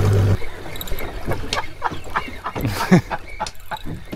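Water slapping and gurgling against a small boat's hull in irregular short splashes, one louder near the end; a steady low hum cuts off just after the start.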